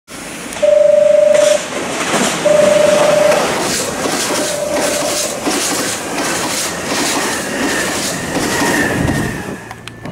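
Nankai electric train sounding its horn as it approaches: two loud single-pitched blasts of about a second each, then a fainter third. The train then passes close by with a loud rush and a regular clickety-clack of wheels over rail joints, fading near the end.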